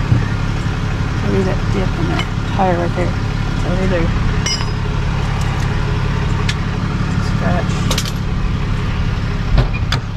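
Tow truck engine idling with a steady low rumble, with a few clicks and one sharp knock near the end.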